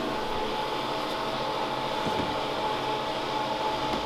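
Steady hum of electric appliances with a motor-driven fan, a faint steady whine running through it.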